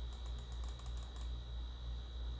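A quick run of about ten light clicks in the first second or so, typical of keys being tapped on a computer keyboard. Underneath is a steady low electrical hum with a faint constant high whine.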